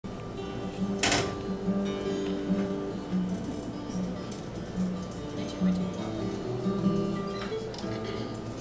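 Acoustic guitar and fiddle being tuned and tried out between songs: single held notes, started and stopped in short runs, over low talk in the room, with a sharp knock about a second in.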